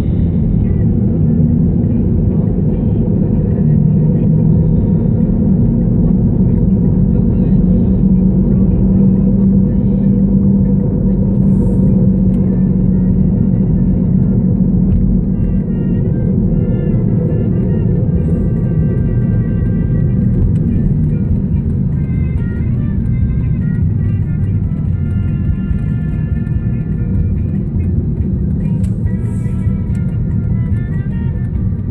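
Steady low rumble of a car's engine and tyres heard from inside the moving car, with music playing over it; a melody comes through more clearly from about halfway.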